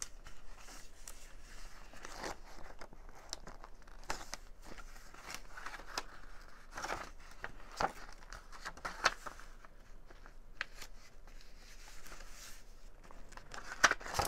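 Sheets of old, stiff paper rustling and crinkling as hands fold, shift and smooth them flat, with a few sharper paper crackles.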